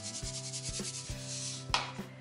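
Sea salt grinder being twisted: a rapid, even rasping crunch of salt crystals being ground, ending with one sharper click near the end.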